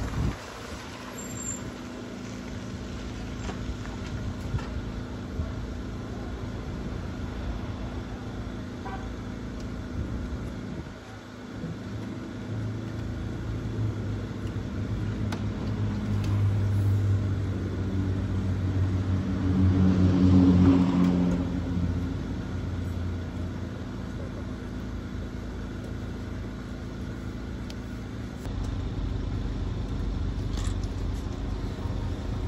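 Honda Odyssey minivan's engine idling with a steady low hum, which swells from about twelve seconds in and is loudest around twenty seconds before settling back.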